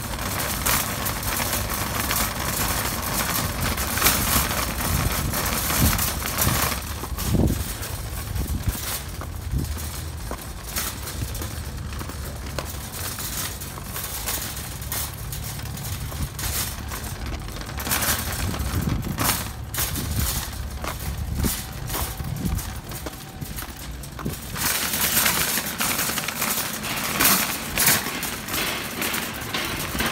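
Footsteps of worn leather boat shoes on pavement: a long run of irregular sharp taps over a steady low rumble.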